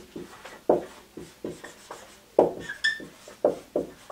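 Dry-erase marker writing on a whiteboard: a quick string of short taps and strokes as letters are formed, with one brief high squeak of the marker tip about three seconds in.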